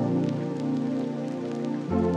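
Calm lofi music of soft sustained chords, with the chord changing just before the end, and a light patter of rain sound mixed in underneath.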